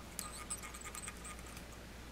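Fly-tying thread being wrapped from a bobbin to tie a pheasant rump feather onto a hook: faint small ticks and thin squeaks of thread and fingers at the vise.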